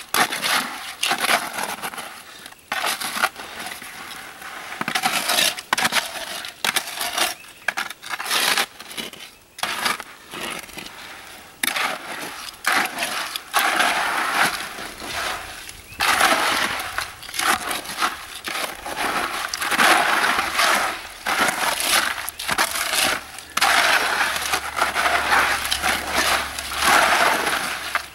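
Wet concrete mix with gravel in it being stirred by hand in a plastic five-gallon bucket: irregular gritty scraping and crunching of stones against the bucket walls, louder in the second half.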